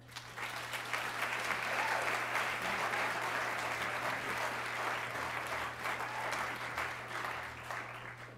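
Audience applauding, starting just after the beginning and dying away near the end.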